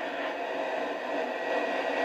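Helicopter in flight: a steady hiss-like cabin noise with a faint high whine running through it.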